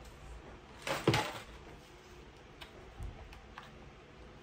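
Two sharp clicks close together about a second in, then a few fainter ticks, from handling equipment close to the microphone.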